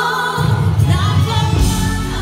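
Live gospel music: women singing lead over a choir and band, with the low end of the band coming in heavily about a third of a second in.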